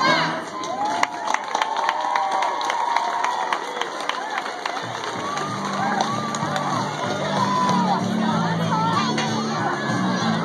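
Crowd cheering and clapping, with many children shouting and whooping, as a dance song ends. About halfway through, music starts up again under the cheering.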